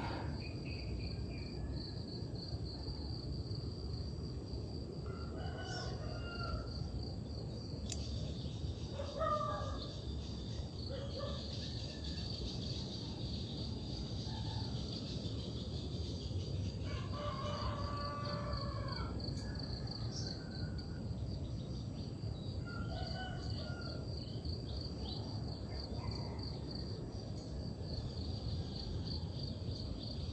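Rural morning ambience: a steady pulsing insect trill, with a rooster crowing for about two seconds a little past the middle, and scattered shorter bird calls.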